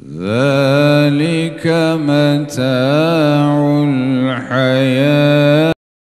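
A man reciting the Quran into a handheld microphone in melodic tajwid style, with long held notes ornamented with slow pitch glides and brief breath breaks between phrases. The voice cuts off abruptly near the end.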